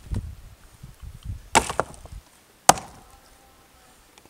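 Rock knocking on rock as stones are handled and set on a dry-stone wall: a rough crunching scrape about a second and a half in, then one sharp clack a second later, the loudest sound.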